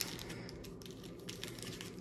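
Faint, scattered light ticks and rustling from trading cards being handled.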